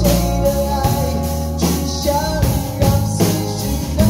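Live band playing a slow pop ballad on acoustic and electric guitars and keyboard, with a man singing over it.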